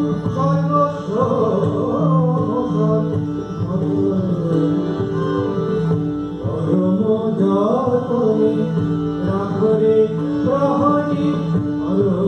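Indian classical-style devotional song: a voice sings a winding, ornamented melody over steady held accompanying notes, with a sitar among the accompaniment.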